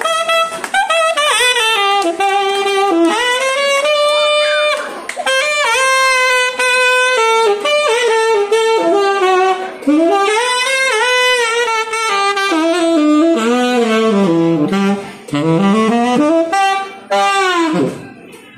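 Tenor saxophone playing a jazzy solo melody in phrases with bends and slides, dropping to low notes near the end and finishing on a falling glide.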